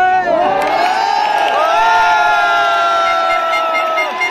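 Cricket crowd breaking into loud cheering and shouting, many voices at once. It comes in suddenly at the start, and several long held cries carry through to the end.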